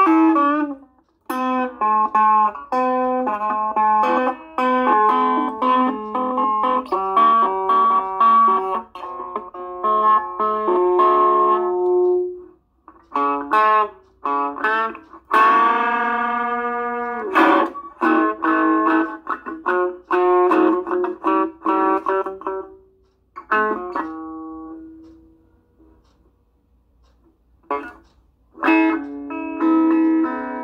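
Semi-hollow electric guitar played unaccompanied: runs of plucked notes and strums. Partway through, the pitch of a ringing chord slides as a tuning peg is turned on a freshly restrung string. Near the end a single note rings out and fades, and after a short silence the playing starts again.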